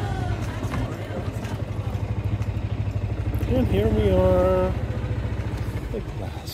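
Golf cart running along, a steady low pulsing engine drone. Near the middle a person's voice calls out, rising and then held for about a second.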